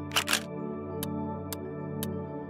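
Quiz sound effects over steady background music: a brief double swish just after the start as the answer choices appear, then a countdown timer ticking twice a second from about a second in.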